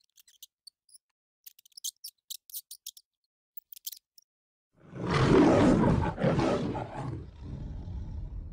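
A run of quick, faint high ticks, then a lion's roar beginning about five seconds in. The roar is loudest at its start and tails off into a lower, quieter growl.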